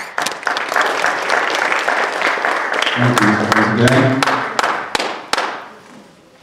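Audience applauding, thinning to a few last separate claps and dying away near the end.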